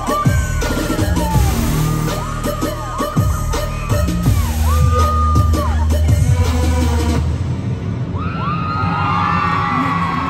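Loud live concert music through the PA, with heavy bass hits and gliding electronic tones. The music stops about seven seconds in, leaving the crowd cheering and screaming.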